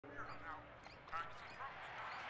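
Faint, indistinct voices talking in the background of a room, with no clear words.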